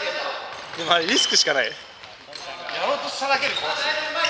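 Futsal being played on a wooden gym floor: the ball kicked and bouncing, sneakers squeaking, and players calling out in short bursts, with a lull about two seconds in.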